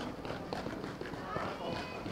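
Footsteps of a skier in ski boots walking across a stage, over faint background voices.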